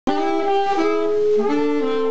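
Alto and tenor saxophones playing a jazz melody together in two-part harmony, in held notes that change about every half second. The sound cuts in abruptly at the very start.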